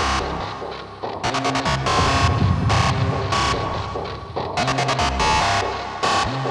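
Hard techno track: a dense, pounding electronic beat with a heavy bass line and repeated bursts of noise. It thins out briefly about a second in, then comes back in full.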